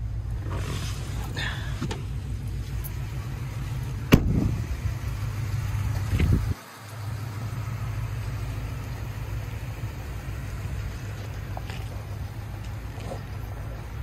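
Pickup truck door opened with a sharp latch click about four seconds in and shut with a heavy thump a couple of seconds later, over a steady low rumble.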